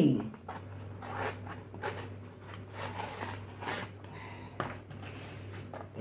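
Paper takeout box torn open by hand: irregular scratchy rustling and crinkling of the cardboard flaps and paper liner, over a steady low hum.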